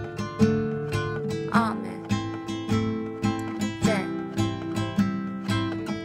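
Acoustic guitar strummed in a steady down-up-up (AYY) pattern, two patterns per chord, through a Dm–Am–C–G chord progression.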